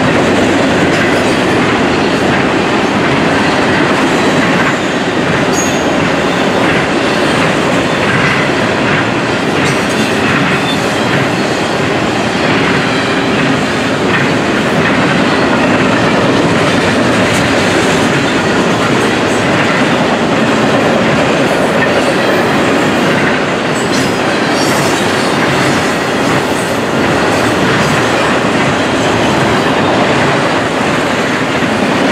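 Freight cars loaded with highway trailers rolling past close by at speed: a steady rumble of steel wheels on rail, with scattered clicks as the wheels cross the rail joints.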